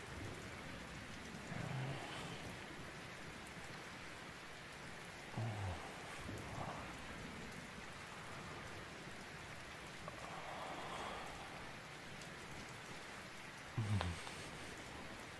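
Steady rain ambience, an even patter, with a few short low sounds rising above it about two and five seconds in.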